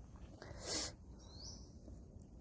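A short breathy hiss from a person, like a quick sharp breath, about halfway through, and a faint thin rising chirp from a bird just after it, over low outdoor background noise.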